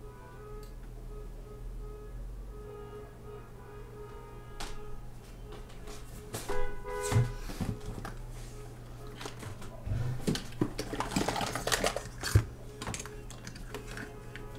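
Music from a parade passing in the street, with steady sustained tones throughout. About halfway in and again near the end there are knocks and clatter from a tablet being picked up and handled close to the microphone.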